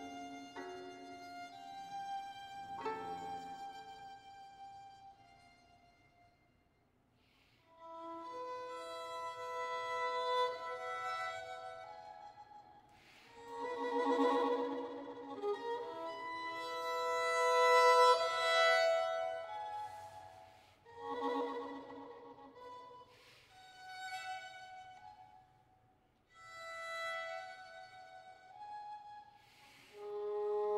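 Solo violin, bowed, playing phrases of held notes separated by pauses. The sound dies away almost to silence about six seconds in and again shortly before the end, then each new phrase begins.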